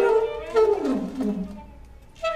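Alto saxophone and cello improvising: a pitched tone slides downward, howl-like, and settles into a low held note that fades near the end.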